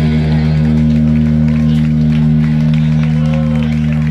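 Live rock band's last chord ringing out through the amplifiers: the strumming stops about half a second in and a steady low drone from the electric guitars and bass holds on, with crowd voices over it.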